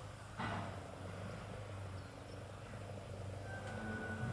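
A kitten purring softly, a steady low hum, with a brief rustle about half a second in.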